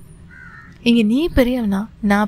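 A woman's voice narrating: a short stretched phrase starting about a second in, with a rising and falling pitch, after a quiet pause.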